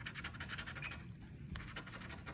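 A scratch-off lottery ticket being scratched: rapid rubbing strokes across the latex coating, busiest in the first second and lighter after, with a small click about one and a half seconds in.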